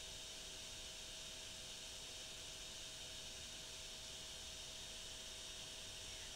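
Faint steady hiss with a low constant hum: the recording's background noise, with no other sound.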